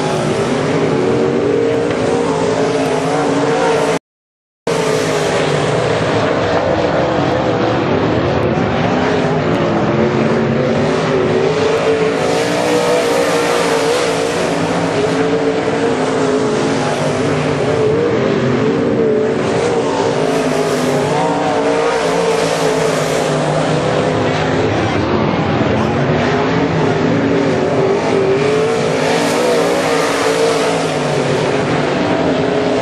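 A field of IMCA Modified dirt-track race cars running at racing speed, their V8 engines droning continuously with pitches that rise and fall as the cars go through the turns and down the straights. The sound cuts out completely for about half a second around four seconds in.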